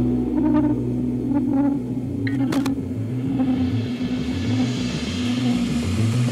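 Psychedelic rock in a sparser, quieter stretch: a sustained low bass with a pulsing bottom end, a few short picked notes in the first two seconds, and a single sharp hit about two and a half seconds in, filling out again near the end.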